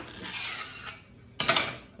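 Velcro hook-and-loop strip being pulled apart as a Kydex holster is separated from its mounting bracket: a rasping tear lasting about a second, then a shorter second burst about a second and a half in.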